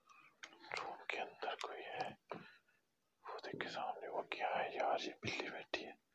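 A man whispering in two stretches of about two seconds each, with a short pause between them.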